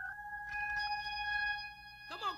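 Organ holding a single high note steadily, its overtones filling out about half a second in.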